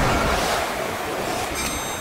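Ocean surf washing onto a sandy beach: a steady rush of water noise, with a few faint high tones coming in near the end.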